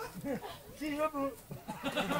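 People talking among a crowd of spectators, in short voiced phrases.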